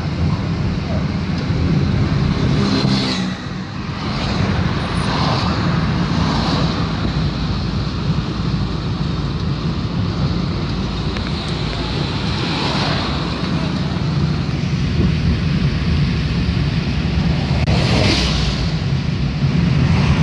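Steady road and engine rumble of a moving car heard from inside the cabin, with the rushing noise of vehicles passing several times.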